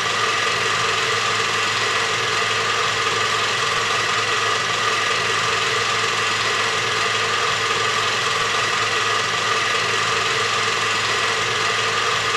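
A loud, perfectly steady mechanical whirring hum that does not change.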